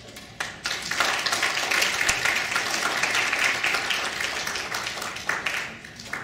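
Audience applauding: a few separate claps, then full applause from about a second in that dies away near the end.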